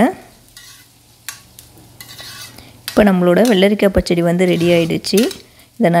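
A spoon stirring cucumber pachadi, yogurt with cucumber pieces, in a pan: soft scraping and a few light clicks against the pan for about three seconds. A woman's voice then comes in and runs for about two seconds.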